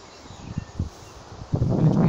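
Wind buffeting the microphone outdoors in low rumbles and a few bumps, over a faint hiss; a man's voice starts talking about a second and a half in.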